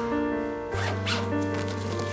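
A fabric suitcase's zipper pulled in a couple of quick strokes around the middle, over background music.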